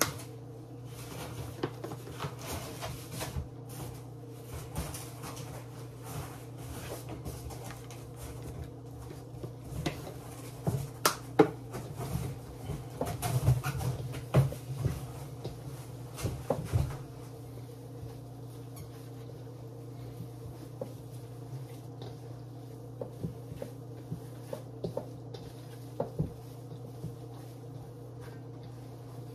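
Gloved hands mixing raw ground meat in a stainless steel bowl: irregular squelches, taps and knocks against the bowl, busiest in the first half and sparse later, over a steady low hum.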